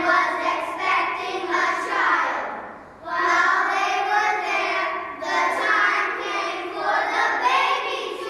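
A group of young children's voices in unison, with a short pause about three seconds in before they carry on together.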